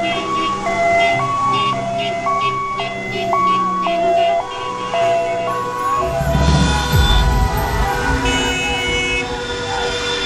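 Two-tone emergency vehicle siren switching evenly between a high and a low note about every half second, typical of an ambulance. About six seconds in, the siren gives way to a loud low rumble, and short horn-like tones sound later on.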